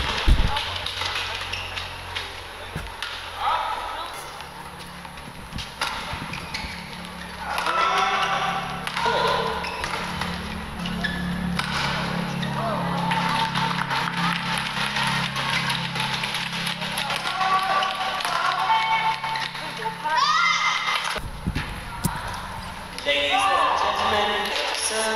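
Badminton doubles rally: sharp knocks of racket strikes on the shuttlecock and footfalls on the court, with voices and a steady low hum.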